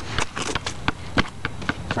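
A rubber ball bouncing on a concrete sidewalk together with sneaker footsteps on the concrete: a quick, uneven string of sharp slaps.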